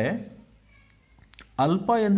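A man speaking Kannada in a teaching voice. His voice falls off right at the start, about a second of quiet follows with only faint high tones, and he speaks again near the end.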